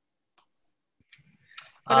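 Near silence for about a second, then a few faint short clicks, and a man beginning to speak with an "uh" just at the end.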